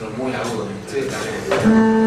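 Double bass bowed with a sharp attack about a second and a half in, then held as one steady note; before it, voices.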